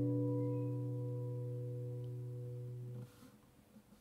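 Nylon-string classical guitar's closing chord over an open A bass ringing and slowly fading, then cut off abruptly about three seconds in, followed by a few faint ticks.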